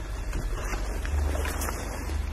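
Wind buffeting the microphone as a low rumble, with rustling of brush and dry twigs as the camera pushes through undergrowth.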